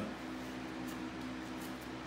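Faint scraping of a hawkbill knife stripping bark from a green cedar stick: a couple of light, short strokes about a second in and again near the end, over a steady low hum.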